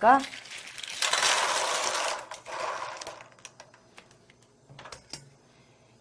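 Cockles in their shells tipped from a plastic colander into a pot of boiling water: a dense rattle of shells pouring in for about a second and a half, starting about a second in, then scattered clicks of shells knocking together as they settle.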